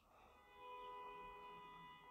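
A faint, steady musical tone made of several pitches at once, like a held chord, sounding for about a second and a half from about half a second in.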